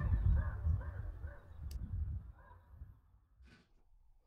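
Outdoor ambience: an uneven low rumble of wind on the microphone with a few faint distant calls, fading out about three seconds in. There is a single sharp click about halfway through.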